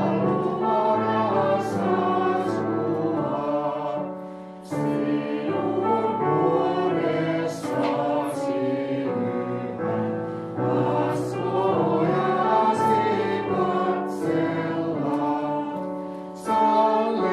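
A hymn sung by several voices over a keyboard accompaniment, in long held phrases with short breaths between them.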